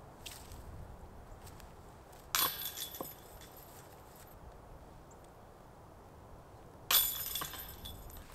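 A putted golf disc strikes the metal disc golf basket low, missing the chains, with a sharp clank and a short metallic rattle that dies away over about two seconds. A second sharp clatter comes near the end.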